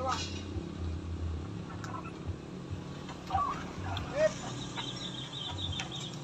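Toyota Sienta minivan's engine idling with an uneven low rumble while the car stands on a steep hairpin climb, just before it pulls away. Brief voice calls come through about three to four seconds in, and a high wavering tone runs over the last second and a half.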